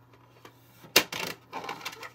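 Hard plastic lid of a Fashion Girl toy case snapping shut: one sharp click about a second in, followed by a brief rattle of the plastic case being handled.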